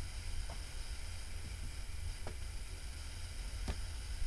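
Room tone: steady hiss and a low hum, with three faint clicks.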